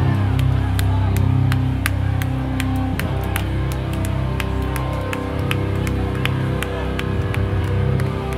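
Hardcore band playing live through a club PA: sustained distorted guitar and bass chords under a steady ticking, about three a second.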